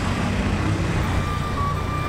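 Steady low engine and road rumble of a motorbike riding through city traffic. A thin, high, held tone comes in about halfway through.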